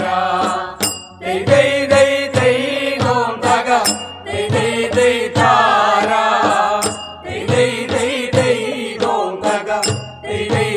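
Malayalam folk song (nadanpattu): singing over a steady percussion beat, with a short high ring about every three seconds.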